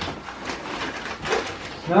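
Crinkling and rustling of a plastic dog-treat bag being handled, an irregular run of small crackles.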